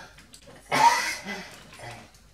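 A person's voice: a sudden brief loud outburst about two-thirds of a second in, followed by a few quieter vocal sounds.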